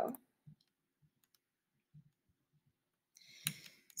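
A few faint computer mouse clicks, the loudest about three and a half seconds in, as the on-screen slide is advanced; otherwise near silence.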